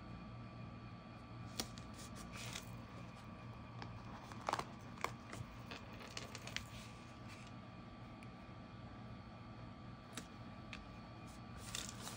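Faint handling sounds of paper stickers being peeled from their backing and pressed onto a cardstock card: a scattering of soft ticks and light rustles over a steady low hum.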